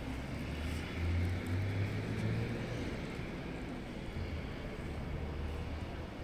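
Steady low outdoor rumble of city background noise, swelling a little between about one and two and a half seconds in.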